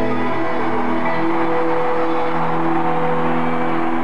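Live rock band music in an arena: the band holds a sustained chord over a steady wash of noise.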